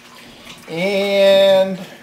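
Speech only: a voice holding one long, steady, drawn-out "and" for about a second, after a quiet start.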